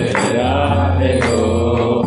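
Devotional chant music: a melodic mantra sung over a steady low drone, with a sharp accent about once a second.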